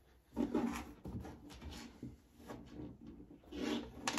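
Faint rubbing and a few light clicks from handling a small screw and Phillips screwdriver by the opened plastic security panel.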